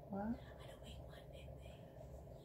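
Quiet speech: a brief voiced sound just after the start, then soft whispering.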